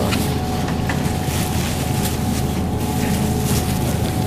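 Steady low hum of a supermarket's refrigerated display cases with a faint high whine, and light crinkling of a thin plastic produce bag being handled.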